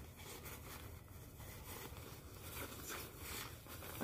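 Faint, soft rustling and handling of a cloth flag as it is folded up and slipped back into its bag.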